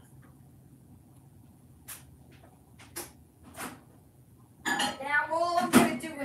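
A few light clicks and clinks of small hard objects handled out of sight, followed in the last second or so by a person's voice.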